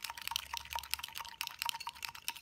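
Glass test tube of baby oil and salt being tipped back and forth in the hand: a run of rapid, irregular light clicks with a faint liquid slosh as the oil and undissolved salt shift inside.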